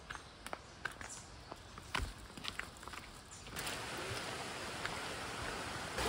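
Footsteps on a dirt trail, a few soft, irregular steps. About three and a half seconds in, the steady rush of a shallow stream running over rock takes over.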